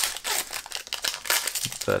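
Foil wrapper of a Pokémon trading card booster pack crinkling as it is torn open and crumpled: a quick run of small crackles and clicks.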